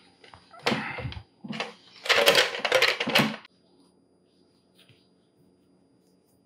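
Black plastic mandoline slicer being unfolded and stood on a wooden cutting board: a string of plastic clacks and rattles, loudest about two to three seconds in.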